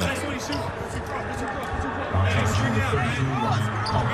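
Sounds of an indoor basketball court during a stoppage after a foul: distant voices of players and officials in the arena, over a steady low background.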